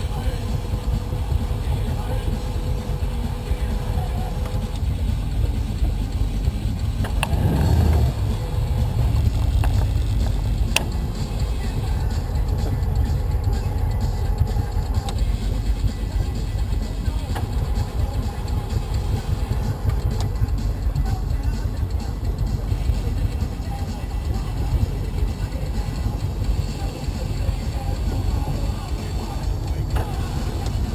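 MasterCraft wakeboard boat's inboard engine running at low speed, a steady low rumble with water and wind noise on the stern-mounted camera, and a brief louder surge about eight seconds in.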